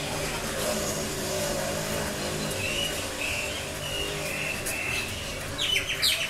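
Felt-tip marker squeaking on paper in short strokes as words are handwritten, faintly in the middle and most strongly near the end, over a steady low hum.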